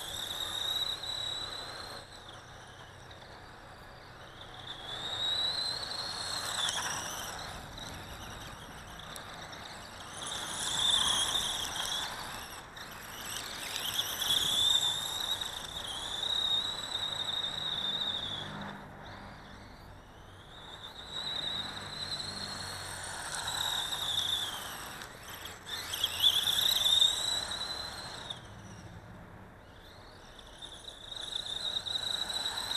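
Dromida DB4.18 electric RC buggy running in repeated bursts, its motor and drivetrain giving a high-pitched squealing whine that rises and falls in pitch and loudness, with hiss from the tyres scrabbling on dirt and gravel.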